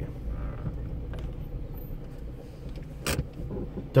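Low, steady engine and road rumble inside a moving car's cabin, with a single sharp click about three seconds in.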